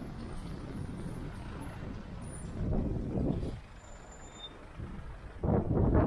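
Road traffic on a city street: cars and vans driving past close by, with a steady rumble of engines and tyres. It swells twice, briefly around the middle and more strongly near the end.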